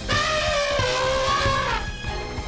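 A cartoon baby elephant trumpeting: one long call that dips slightly in pitch and turns up at the end, over background music.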